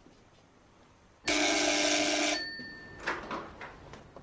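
Electric doorbell ringing once for about a second, with a faint ringing tail after it stops, followed by a few soft clicks near the end.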